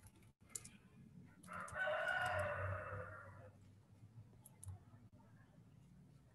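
A single drawn-out animal call about two seconds long in the background, starting about a second and a half in. A few computer clicks sound around it.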